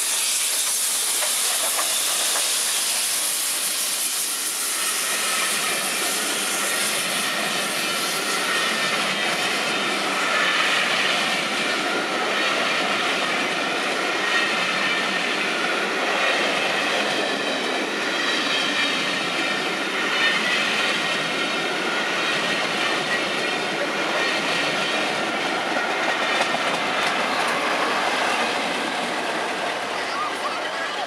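LMS Princess Coronation Class Pacific steam locomotive 46233 Duchess of Sutherland passing close at speed with a loud hiss of steam for the first several seconds, then a long train of coaches running by, their wheels rolling steadily on the rails. A diesel locomotive on the rear of the train goes by at the end.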